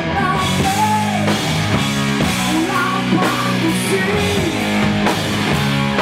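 Hard rock band playing: electric guitar, bass and drum kit, with a male lead vocal.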